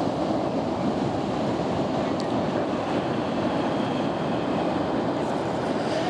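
Ocean surf breaking and washing up a beach: a steady, full rush of water that holds evenly throughout.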